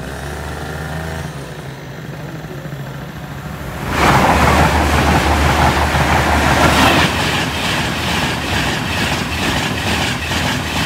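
Two LNER high-speed electric trains, an Azuma and a Class 91-hauled InterCity 225, passing each other at speed through a level crossing on a 125 mph line. The train noise comes in abruptly and loud about four seconds in and stays loud to the end.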